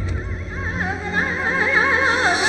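Horse whinnying: a quivering call whose pitch wavers rapidly up and down, over a low musical hum.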